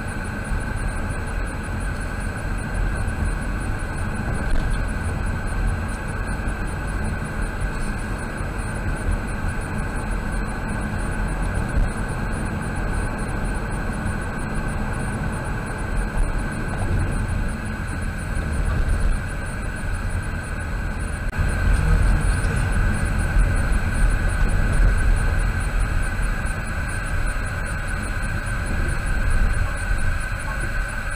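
Steady road and engine noise of a car heard from inside the cabin at low town speed, a low rumble with tyre hiss that grows louder about two-thirds of the way through.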